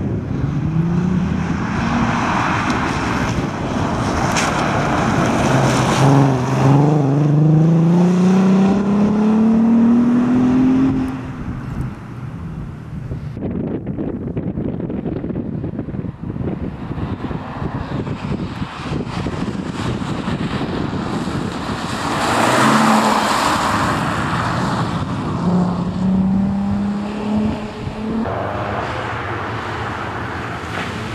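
Audi A3 quattro rally car's engine under hard acceleration, its pitch climbing steadily for several seconds before breaking off at a shift or lift. A stretch of dull rumbling noise follows, then the engine is heard again near the end.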